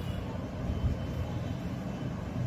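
Steady low rumble of background noise, with one brief low thump a little under a second in.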